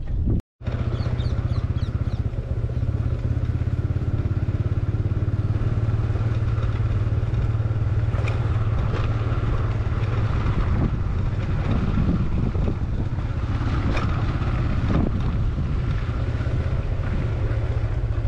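TVS Apache 160 single-cylinder motorcycle engine running steadily at an even speed on a rough dirt track, with a few short knocks about halfway through and again near the end.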